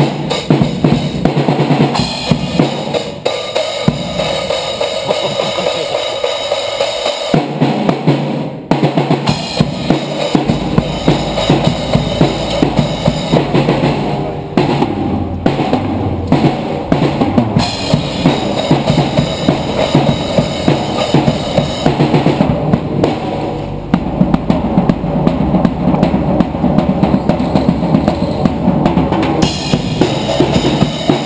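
Acoustic drum kit played in a steady beat: bass drum, snare and cymbals.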